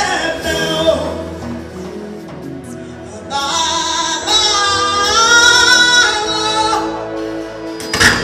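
Live gospel music: a woman singing into a microphone over a band with drums. Softer for the first three seconds, then a strong sung phrase with long held notes from about three and a half seconds in.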